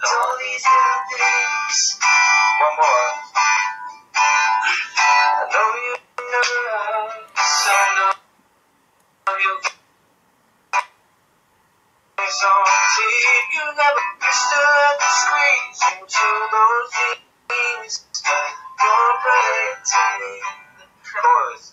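A man singing to his own acoustic guitar, the sound coming through a computer's speakers. The song drops out for about four seconds in the middle, with only a couple of brief sounds in the gap, then carries on.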